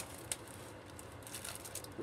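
Quiet handling of a padded plastic mailer: a few soft crinkles and light clicks as it is picked up and turned.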